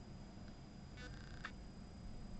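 Faint rattle of embossing powder being shaken out of a small plastic jar onto card: a quick fine patter about a second in, then a brief rustle.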